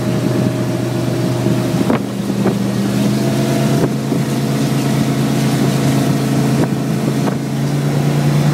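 Fountain 27 Fever powerboat's engine running steadily, with wind on the microphone and a few brief knocks; the engine note rises slightly near the end.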